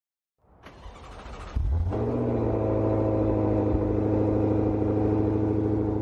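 A car engine running at a steady speed: it comes in faintly, jumps loud about one and a half seconds in, and then holds one low, even note.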